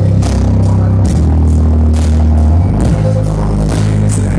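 Hard rock band playing live at high volume: heavy low bass and guitar notes under repeated cymbal hits that land two or three times a second.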